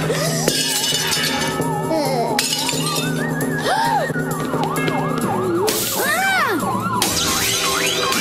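Cartoon soundtrack of swooping, wavering tones that slide up and down and overlap, like a chorus of wailing sirens, over a steady low drone that shifts about five seconds in.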